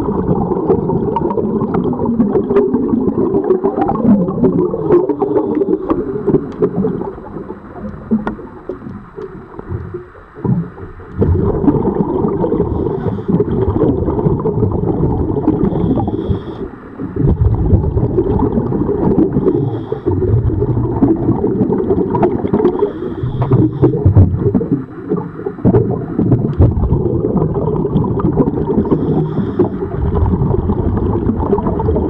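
Underwater sound of a scuba diver breathing through a regulator: long runs of low, gurgling exhaled bubbles, broken by short lulls, with brief faint hisses of inhalation between breaths.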